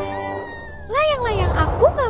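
A young girl's whiny, wordless cries, drawn out and swooping up and down in pitch several times.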